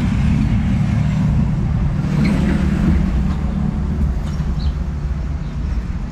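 Road traffic on a city street: a steady low engine rumble from vehicles passing close by, easing slightly near the end.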